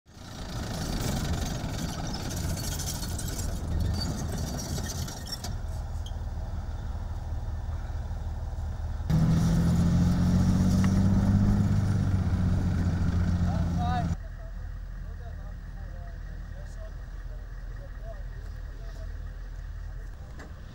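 Military vehicles driving on dirt: first a tracked armoured personnel carrier passes close, its engine and tracks making loud, rough noise. About nine seconds in, the sound cuts to a nearer, louder, steady engine hum. At about fourteen seconds it drops to a quieter, distant engine rumble.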